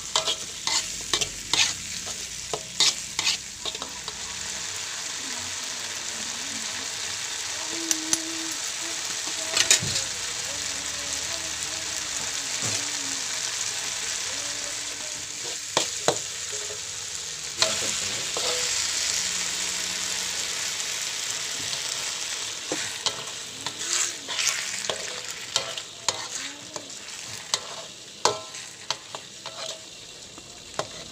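Barnacle meat frying in a wok, sizzling steadily while a metal spatula stirs and scrapes it, with frequent clacks of the spatula on the pan, thickest in the first few seconds and again near the end. The sizzle eases in the last few seconds as the dish turns saucy.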